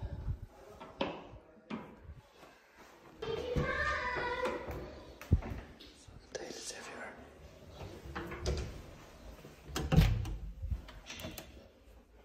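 Interior doors being pushed open and shut in a small tiled room, with a sharp knock about five seconds in and a loud thud about ten seconds in. A voice is heard faintly between three and four and a half seconds in.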